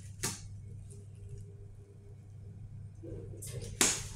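Hitachi elevator car's steady low hum. A sharp click comes just after the start, and a louder sharp clunk near the end as the car settles at the landing and its doors begin to open.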